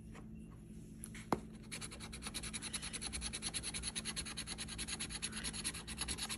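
A coin scratching the coating off a scratch-off lottery ticket in rapid, even back-and-forth strokes, starting a little under two seconds in and growing slightly louder; a single light click comes just before.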